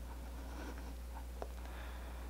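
Quiet room tone with a steady low hum and a single faint tick about halfway through.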